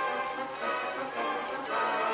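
Orchestral film-score music with strings and brass, played as background to the documentary.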